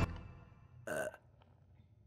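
Film music cutting off and dying away, then a single short human burp about a second in.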